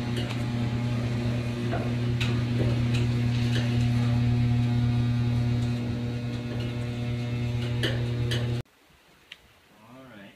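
Electric boat lift motor running with a loud, steady low hum, with a few light clicks over it; the hum cuts off abruptly near the end.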